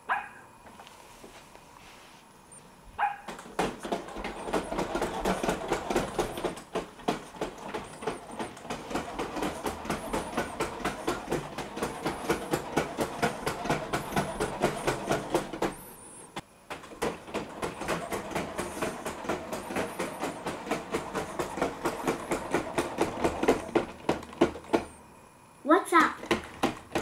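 Weilan BabyAlpha robot dog walking: its leg servos whir, with a quick, regular ticking of steps. It walks for about 13 seconds starting about 3 s in, stops briefly near 16 s, then walks again until shortly before the end.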